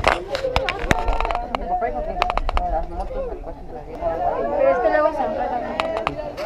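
People talking nearby, several voices in conversation, with a few sharp clicks in the first half.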